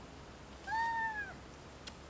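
A single high-pitched cry, under a second long, rising slightly and then falling.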